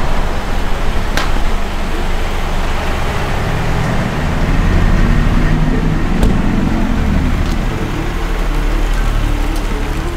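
A car engine running, with a deep low rumble that swells from about four seconds in and eases off near the end. A couple of sharp clicks stand out, one about a second in and one about six seconds in.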